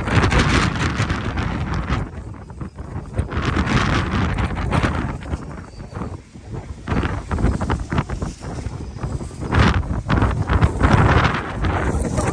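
Strong wind buffeting the microphone, rising and falling in uneven gusts.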